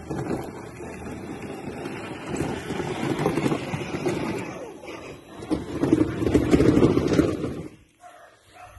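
Children's ride-on electric toy car driving up on the road, its plastic wheels rumbling unevenly. The noise grows louder as it arrives and cuts off just before the end.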